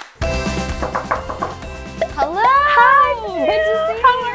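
Background music, then from about two seconds in, high-pitched excited squeals and exclamations of two women greeting each other, their voices swooping up and down in pitch.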